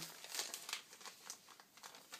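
Faint crinkling of a paper store receipt being handled, a few quiet rustles over low room tone.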